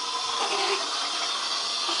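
Water running steadily from a bathroom sink tap, an even hiss with no break.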